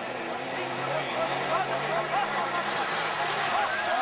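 Engines of two old truck-based autocross racers running hard side by side on a dirt track: a steady engine drone that grows slightly louder as they come closer.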